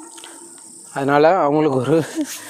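Steady high-pitched insect chirring, likely crickets, in the background. About a second in, a man's voice comes in loud over it with a drawn-out, wavering sound.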